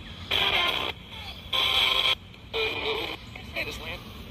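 ITC device (a hacked Radio Shack radio or similar sweep device) putting out chopped fragments of radio broadcast audio: three short bursts of speech-like sound, each starting and stopping abruptly, with quieter background between them.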